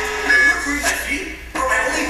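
Music with a voice over it, from a video being played back; it dips and then comes back in suddenly about one and a half seconds in.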